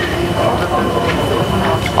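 Steady outdoor background noise with faint voices mixed in, the ambience of a busy pedestrian street café.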